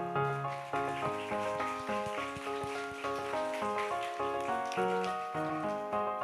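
Electronic keyboard playing background music in a piano voice, notes struck and fading several times a second, with a light patter of noise over the middle.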